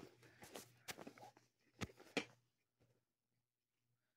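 Faint rustling and a few soft knocks from a hand rummaging in a bag for a hairbrush, then near silence.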